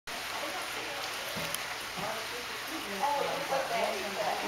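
Indistinct voices over a steady hiss of indoor background noise, the voices becoming clearer about three seconds in.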